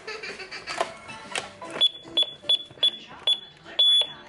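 A home security alarm keypad beeping six times, one short high beep about every third of a second, as a code is keyed in to disarm the system. Background music and voices play underneath.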